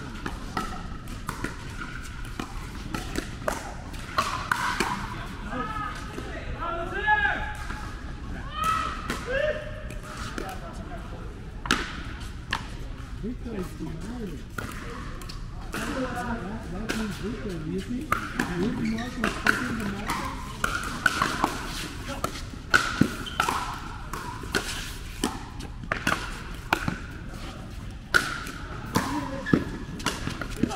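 Pickleball rally: sharp pops of paddles hitting the hard plastic ball and the ball bouncing on the court, coming at irregular intervals throughout, with voices murmuring in the background.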